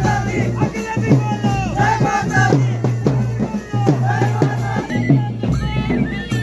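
Folk procession music: a large double-headed drum beaten in a steady rhythm under a shrill wind instrument playing a wavering melody that glides up and down.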